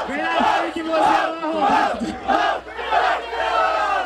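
A crowd of young people shouting, whooping and laughing together in loud, overlapping yells: the audience's reaction to a punchline in a freestyle rap battle.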